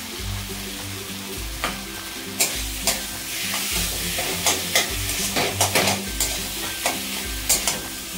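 A metal spatula scraping and knocking against a metal kadhai as fried potato, tomato and coriander are stirred, over a faint sizzle. The knocks start about a second and a half in and come thick and fast through the second half.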